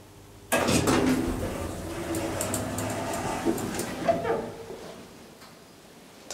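Sliding doors of a Deve-Schindler hydraulic elevator car opening as the car arrives at a floor. They start abruptly about half a second in and run for about four seconds before fading out.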